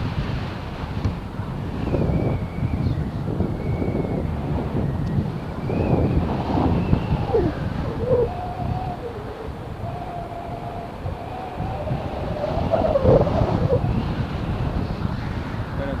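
Wind buffeting the microphone of a camera flying with a tandem paraglider: a steady low rumble that swells and eases, strongest about three-quarters of the way through.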